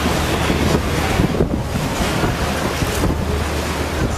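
Wind buffeting the microphone on a moving river tour boat, over the rush of water and a steady low hum from the boat's engine. The gusts are strongest in the middle.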